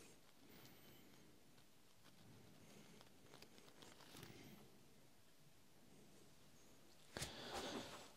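Near silence: room tone with a few faint rustles, and a slightly louder soft sound near the end.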